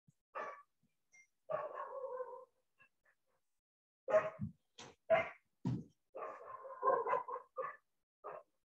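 An animal's high-pitched whines in short spells, with a run of short sharp calls about four seconds in, then more whining near the end.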